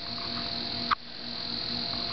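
Steady high-pitched chorus of insects such as crickets, with a brief short blip just before a second in.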